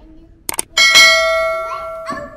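Subscribe-button animation sound effect: a quick double mouse click about half a second in, then a bright bell ding that rings on and slowly fades.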